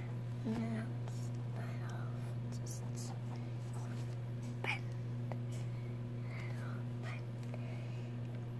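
Steady low electrical hum with soft whispering and faint scratching of a felt-tip fabric marker drawn across a cotton t-shirt; a single short click about halfway through.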